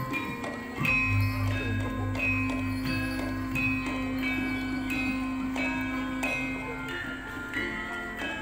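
Javanese gamelan music: bronze metallophones struck in a steady run of ringing notes, over a long-held low tone that throbs slowly from about a second in until near the end.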